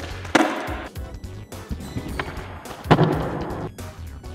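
Skateboard on a concrete floor: two sharp clacks of the deck and wheels hitting the ground, about a third of a second in and again near three seconds, each followed by the rush of urethane wheels rolling on the concrete as a switch front shove is popped and landed.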